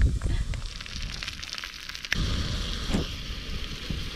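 Pulled pork dropped into a hot cast iron skillet of grilled onions on a camp stove: about two seconds in it lands with a soft thud and starts sizzling, a steady frying hiss that carries on.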